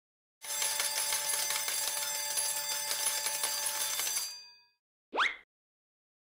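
Sound effect for a subscribe-button animation: a bell ringing steadily for about four seconds and then fading out, followed by one short rising swoop.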